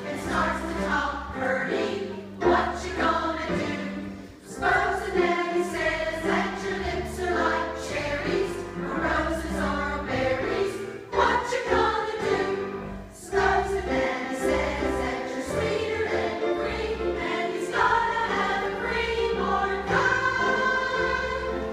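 A choir of women singing a song together, with a low bass line moving underneath the voices.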